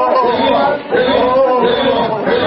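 Many voices praying aloud together, overlapping into a continuous unintelligible chatter.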